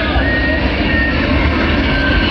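Live metal band playing loud on an open-air festival stage, picked up from the crowd by a camera microphone swamped by heavy bass, with a high melody note held above.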